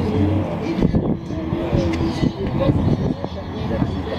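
People talking, untranscribed, over a low steady rumble.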